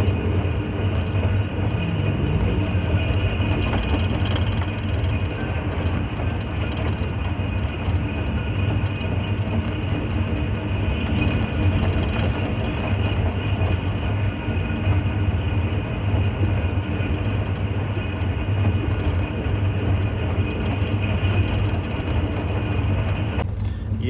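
Pakistan Railways Pak Business Express passenger train running at speed, heard from on board: a steady rumble of the carriage on the rails with a few faint steady tones above it.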